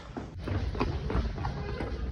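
Quick footsteps on a staircase, about four steps a second, over a low rumble of a handheld phone being carried.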